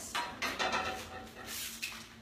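A few short scrapes and knocks of a sheet pan being handled on a kitchen counter.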